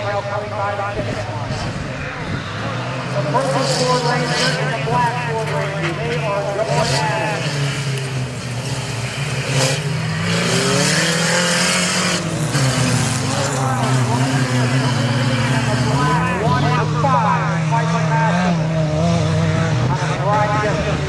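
Compact pickup race trucks' engines revving under hard acceleration, the pitch rising and falling over and over as they race around the track.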